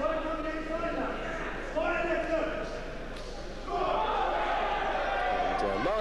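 Spectators' voices shouting long, drawn-out calls to the boxers, three times, echoing in a hall.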